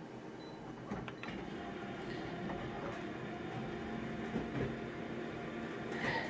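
Colour office photocopier starting a copy job and beginning to print: a steady mechanical hum with a few clicks and knocks, about a second in and again near the end.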